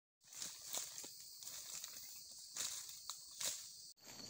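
Tropical forest ambience: a steady high insect drone, with irregular rustling crackles like footsteps or handling in dry leaf litter.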